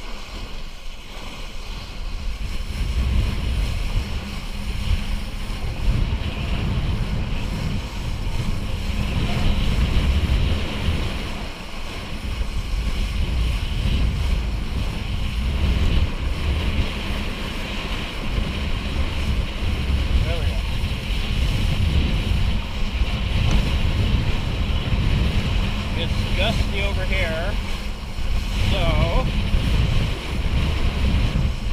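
Wind buffeting the microphone in a heavy, gusting rumble, with water rushing and hissing under a kiteboard at speed. A few brief wavering pitched sounds come through near the end.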